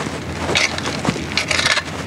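Shovel scooping and tossing loose soil and gravel into a hole to backfill it, a run of several irregular scrapes and falls of dirt.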